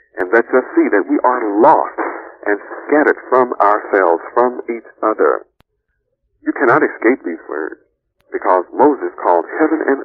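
Speech only: a voice lecturing, thin and narrow-sounding like an old recording, with two short pauses in the second half.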